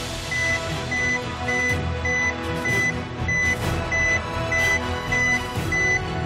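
Suspense music with a short, high electronic beep repeating steadily about every 0.6 seconds, the weigh-in build-up while the scale's reading is awaited.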